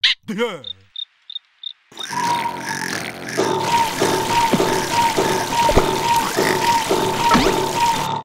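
A short cartoon vocal glide, then a few evenly spaced cricket chirps of a night scene. From about two seconds in, cartoon larvae snore and mumble in their sleep over background music.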